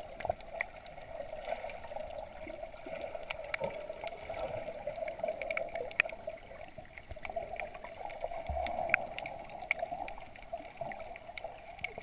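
Underwater sound picked up by a camera in its waterproof housing while submerged: a steady, muffled water noise with many scattered sharp clicks and crackles.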